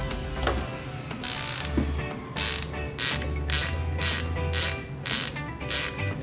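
17 mm ratcheting combination spanner clicking as it is swung back and forth on the nut of a shock absorber's piston rod, a stroke about every half second from about a second in. Background music plays underneath.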